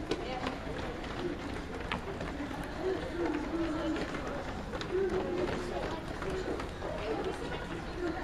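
A group of people jogging on a wooden gym floor, their footfalls light and irregular, with indistinct voices talking throughout.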